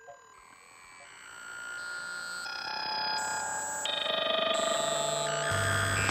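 Electronic music: layered, steady synthesized tones that change pitch in steps every half second or so, swelling gradually louder.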